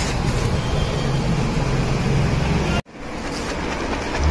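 Steady rush of running water, with a sudden brief dropout about three seconds in.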